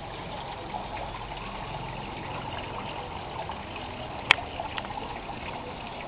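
Water trickling steadily into a garden rock pond. There is one sharp click about four seconds in.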